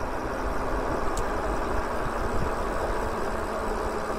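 Wind rushing over the microphone with road noise from a moving e-bike: a steady, even rush with a heavy low rumble.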